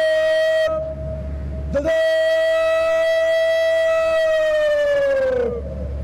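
A drill word of command shouted with a drawn-out vowel across the parade ground: a short held call, then a long one held for nearly four seconds on one pitch that drops away at the end.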